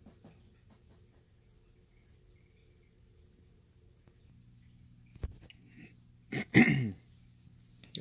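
Quiet room tone with a faint low hum, then a short click about five seconds in and a brief vocal sound from a person, falling in pitch, about six and a half seconds in.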